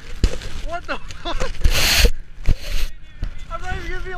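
Knocks and rubbing of a mud-covered action camera being handled, with a short loud hiss about halfway through, and people's voices and laughter around it.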